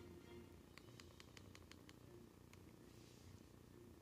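Faint, quick run of about eight clicks from a Coby Kyros MID1042 tablet's hardware buttons, pressed over and over to step down through the recovery menu; otherwise near silence.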